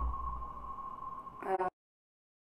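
A steady, single-pitched electronic tone over a low hum, then a brief spoken word about a second and a half in, after which the sound drops out completely.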